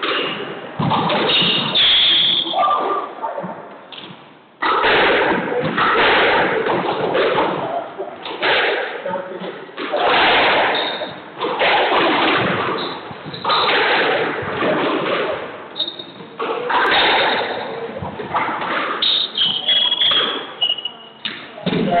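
A squash ball being struck by rackets and thudding off the walls of an echoing squash court, one hit after another in quick rallies with short pauses between points. Short high squeaks, typical of court shoes on a hardwood floor, come through now and then.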